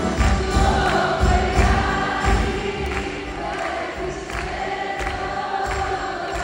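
Live band music with a woman singing held notes into a microphone over a steady drum and bass beat; the beat thins out for a couple of seconds past the middle and comes back near the end.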